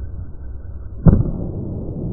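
One heavy thud about a second in as a 112 kg barbell is caught in the clean: the lifter's feet striking the platform and the bar landing on her shoulders, slowed down.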